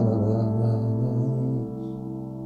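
Nord Stage keyboard piano sustaining a C major sixth chord over a C bass, held and slowly dying away, with a small change in the inner notes just as it begins.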